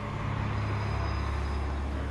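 A steady low rumble with a wash of hiss above it.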